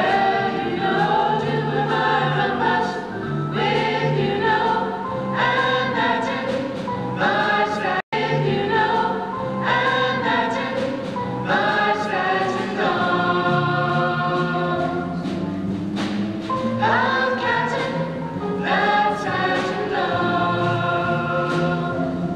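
A small vocal jazz ensemble singing a swing number in close harmony, several voices with a low bass line beneath. The sound drops out for a split second about eight seconds in.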